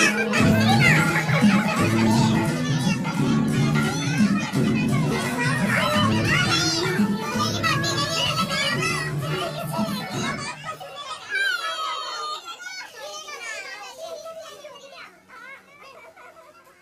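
Background music under a crowd of excited voices chattering and laughing. The music stops about ten seconds in, leaving the voices, which fade out toward the end.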